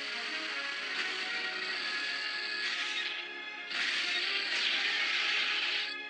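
Orchestral film score under a sustained hissing sci-fi energy-beam sound effect with a high held tone. The hiss dips briefly around the middle and then comes back louder.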